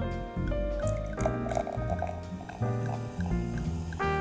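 Jazz background music with brass plays throughout, over champagne being poured into a flute and foaming up in the glass.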